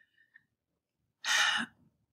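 A woman's audible breath, a single breathy rush about half a second long, after about a second of quiet.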